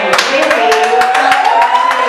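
Spectators clapping in quick, uneven claps, with one voice holding a long shout that rises in pitch and is held over the claps.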